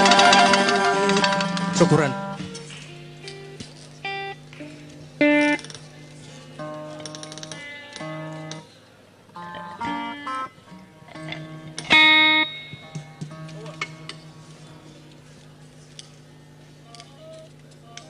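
A traditional band's piece ends loudly about two seconds in, then sparse single notes and short runs are picked out on a plucked string instrument over a low steady hum.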